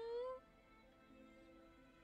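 A drawn-out hummed "hmm" that slowly rises in pitch and breaks off about half a second in, followed by faint, soft background music with long held notes.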